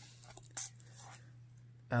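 Trading cards being handled and slid against one another in the hands: a few faint, short rustles over a steady low hum.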